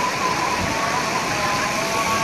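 Steady rush of water, with a few faint held tones sounding through it.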